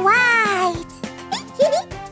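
A cartoon character's high-pitched wordless cry, rising and then falling over most of a second, followed by a couple of short rising squeaks, over children's background music.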